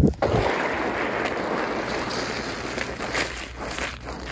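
Slippers sliding and scuffing through wet slush on a sidewalk: a steady wet rush that fades toward the end.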